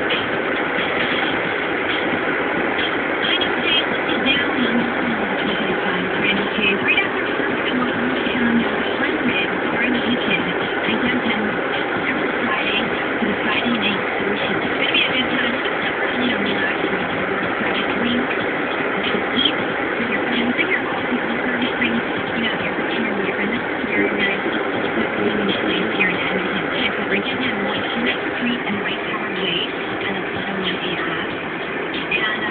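A car driving along a freeway, its steady road and engine noise filling the whole stretch, with muffled voices faintly under it.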